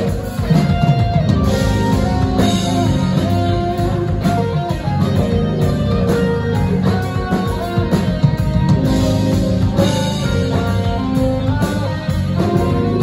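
Live rock band playing an instrumental passage, with electric guitar picking quick melodic notes over a drum kit, heard through the club's PA.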